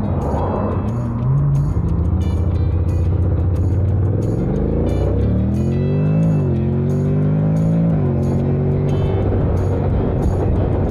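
Honda NC750X DCT parallel-twin engine idling, then pulling away about four seconds in. Its pitch rises and drops back at two automatic upshifts before settling to a steady cruise. Background music with a steady beat plays over it.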